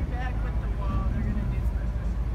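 A 2017 Ram 2500 Power Wagon's 6.4-liter Hemi V8 idling as a low, steady rumble while the truck sits hooked to the wall, with faint voices in the background.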